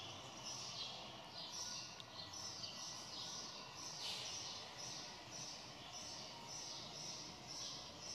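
Faint bird chirping: short high chirps repeating about two to three times a second over quiet room tone.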